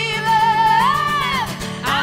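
Live acoustic folk-pop: women's voices singing in harmony over strummed acoustic guitar, holding one long note that bends up about halfway through and falls away, with the next sung line starting near the end.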